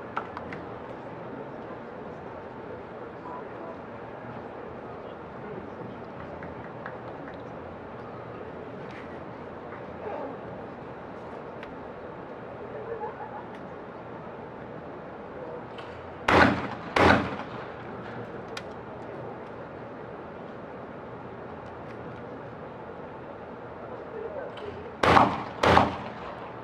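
Two pairs of 12-gauge shotgun shots, each pair two quick shots well under a second apart, with about nine seconds between the pairs. Each pair is a shooter firing at a skeet double.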